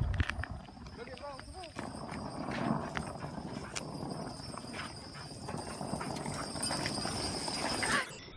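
Longboard wheels rolling on asphalt with a pack of dogs' paws and claws pattering alongside, a steady rolling noise with quick ticks that grows louder as they come closer.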